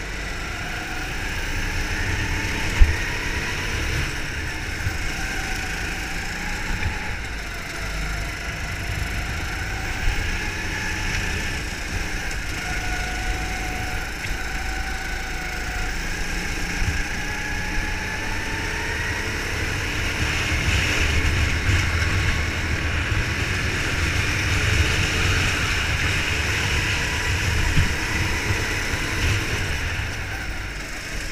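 Go-kart engine running flat out on a lap, heard from on board, its pitch rising and falling as the kart brakes and accelerates through the corners over a low rumble. A single sharp knock comes about three seconds in.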